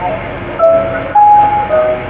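Soft background music in a pause of the sermon: three sustained notes, one after another, rising and then falling, each held about half a second over a low steady hum.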